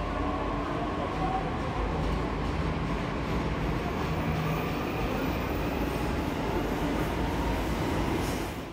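Delhi Metro train running past the platform: a steady rumble with a faint running whine.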